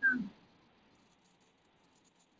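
A brief vocal sound at the very start, falling in pitch, then near silence.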